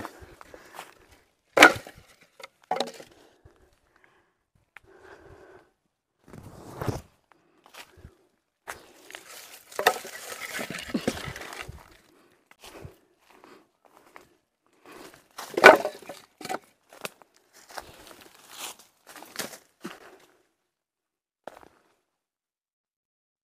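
Footsteps through dry brush and leaf litter, with irregular sharp cracks and knocks of wood, a rustling stretch in the middle, and the loudest crack about three-quarters of the way through.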